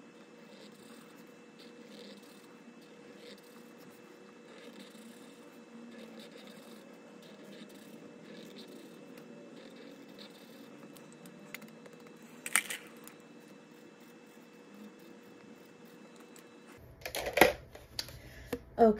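Faint scratching of a felt-tip marker on a paper challenge card as small icons are coloured in, with a sharp click about twelve seconds in and a louder clatter near the end.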